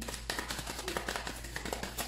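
Tarot cards being handled on a table: a quick, irregular run of light clicks and taps.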